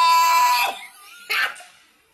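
A man's loud, drawn-out, high-pitched scream of reaction that lasts under a second, followed about half a second later by a brief second outburst.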